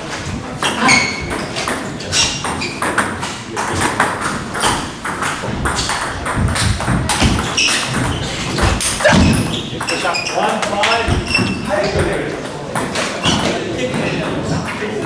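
Table tennis play: sharp clicks of the ball striking bats and the table, at an irregular rally pace, with voices talking alongside.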